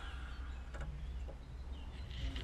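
Faint small clicks of pliers working a cotter pin out of a steering joint's castle nut, over a steady low hum.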